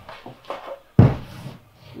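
A mahogany board being handled on a stack of boards: a few light wooden knocks, then one solid thump about halfway through that dies away quickly.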